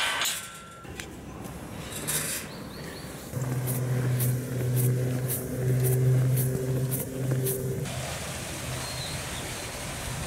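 A steel gate latch clanks and rings briefly as it is opened. Then footsteps on a paved road, about two a second, while a nearby engine hums steadily at a low pitch for a few seconds in the middle.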